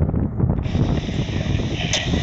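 Crosswind buffeting the microphone in a dense low rumble, joined about half a second in by a steady high hiss.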